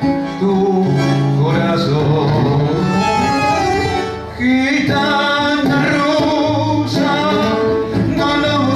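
A man singing into a microphone with acoustic guitar accompaniment.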